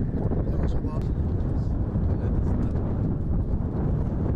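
Wind buffeting an outdoor camera microphone: a steady low rumble, with faint voices in the background.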